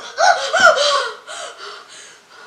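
A woman gasping in short, voiced breaths, about half a dozen in quick succession, dying away over the second half: the frightened panting of someone jolted awake from a nightmare.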